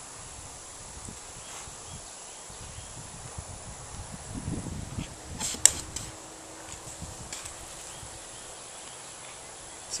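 Faint outdoor background with a steady insect drone, under soft rustles of fingers working a cigar's cut tip and a sharp click about five and a half seconds in.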